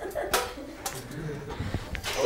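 A few sharp knocks and rattles from a broken metal toaster as it is picked up and handled, over a low murmur of voices.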